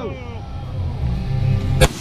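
A single shot from a semi-automatic pistol near the end, a sharp crack.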